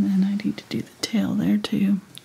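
A woman talking softly, her words indistinct.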